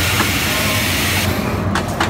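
Pneumatic animatronic pirate prop venting air: a loud hiss for about the first second, then a few sharp clicks near the end, over a steady low hum.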